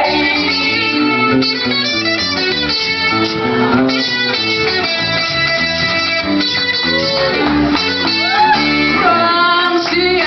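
A live band plays a traditional song on electric bass and acoustic guitar, with a woman's singing voice coming in near the end.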